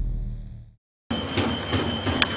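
A low-pitched logo sting fades out, and after a brief silence the live crowd noise of a baseball stadium comes in, with a steady high tone and a few sharp knocks.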